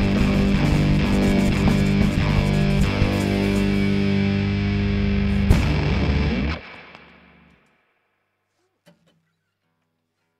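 A live acoustic rock duo of acoustic guitar, run through effects pedals, and drums plays the last bars of a song. A sharp hit comes about five and a half seconds in, then the music stops and rings out. Near silence follows, with one faint knock near the end.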